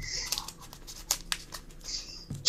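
Dry leaf litter rustling and crackling under footsteps in irregular short crunches, heard through a played-back phone video call.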